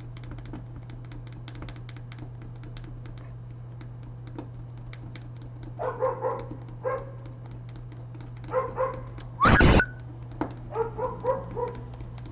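A dog whining and yapping in short pitched calls from about six seconds in, with one loud bark just before ten seconds. Under it are a steady low hum and light clicking from a plastic pry tool worked along the edge of a laptop screen glass.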